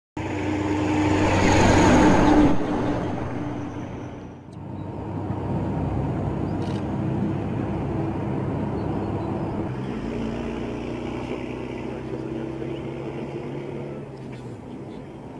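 Heavy military vehicles driving past with a steady engine drone. One passes close and is loudest about two seconds in, then fades. After a short dip the engines drone on steadily.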